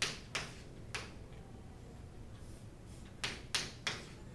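Chalk strokes on a chalkboard as lines and letters are drawn: three short strokes in the first second, a pause, then three more near the end.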